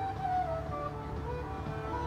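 Music: a melody of held, stepping notes over a steady low bass.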